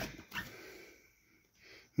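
Faint handling noise as the camera and a cardboard box are moved: a short knock at the start, a second small knock about a third of a second in, then a brief faint rustle.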